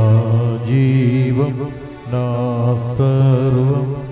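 A man singing a slow Telugu devotional chant with long, wavering held notes and a brief break about halfway through: the sung acclamation at the elevation of the host during Mass.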